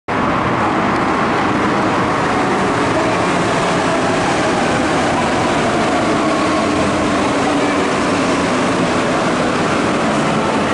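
Steady loud rumble of a metro station, with a train running along the tracks and a faint steady whine over the noise.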